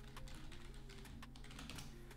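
Typing on a computer keyboard: a short run of faint, irregularly spaced key clicks.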